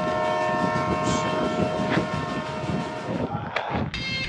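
Train whistle blowing one long, steady chord over a low rumble, cutting off about three seconds in, followed by a few brief noises near the end.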